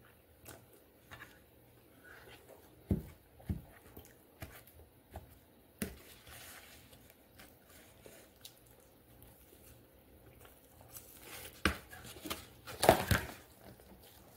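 Eating sounds: scattered soft clicks, rustles and crinkles as food is picked at by hand, with chewing mouth noises and a louder cluster of sounds about a second before the end.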